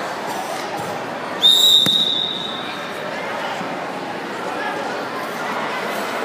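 Referee's whistle giving one short, steady, high blast about a second and a half in, stopping the wrestling on the mat. Gym crowd chatter runs underneath.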